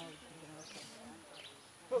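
Low talking of people mixed with an insect buzzing close by.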